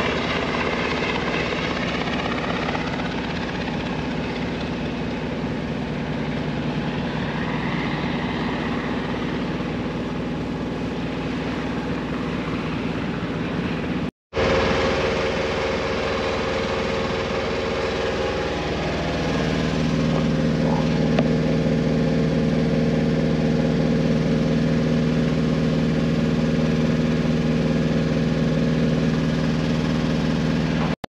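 A helicopter passes overhead, its rotor and engine sound slowly shifting in pitch, over the steady drone of a sailboat's inboard engine motoring under way. The sound cuts out briefly about halfway through, then only the boat's engine drone continues, steady.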